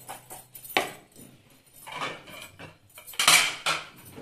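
Dishes clattering on a kitchen counter: a sharp knock about a second in, then a louder, longer rattle of crockery and steel bowls near the end.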